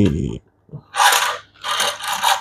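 Small plastic toy fire truck's wheels rolling and scraping over a wooden tabletop: two short rolls, about a second in and again near the end.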